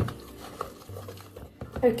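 Wire balloon whisk stirring a runny flour-and-water mixture in a bowl, with small clinks of the whisk against the bowl. A voice starts speaking near the end.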